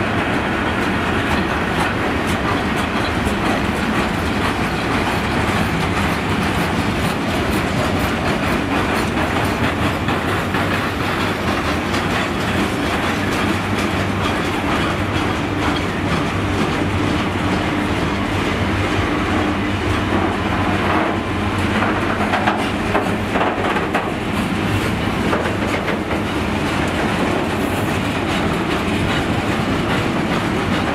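Freight wagons loaded with steel coils rolling steadily past at close range, their wheels clacking over the rail joints in repeated runs.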